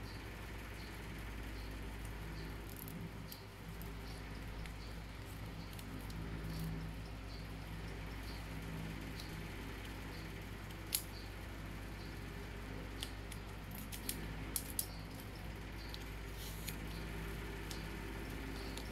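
Steady low background hum with a handful of faint, sharp taps and clicks, mostly in the second half: small handling sounds of a finger tapping a smartwatch touchscreen.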